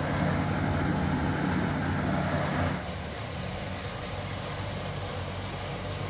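Industrial battery-recycling machinery running steadily: hammer mill, conveyor belt and cross belt magnet, a continuous low machine hum. About halfway through it drops in level and the low hum becomes thinner.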